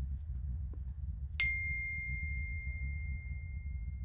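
A single bright, bell-like ding struck about a second and a half in, ringing on as one high steady tone for about three seconds, over a low steady rumble.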